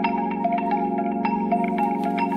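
Background music: a quick melody of struck, ringing notes over steady sustained chords.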